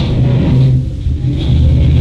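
Distorted electric guitar and bass from a live rock band holding low, ringing notes with the drums dropped out, the pitch stepping lower partway through.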